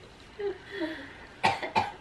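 A person coughing: two short, sharp coughs about one and a half seconds in, after a few faint vocal sounds.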